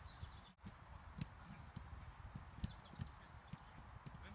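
Footballs being struck in a close passing drill on grass: faint, irregular dull thuds a few times a second, with faint short high chirps in the background.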